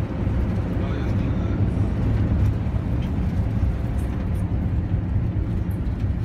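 Steady engine and road rumble heard from inside the cabin of a moving minibus, low and even throughout.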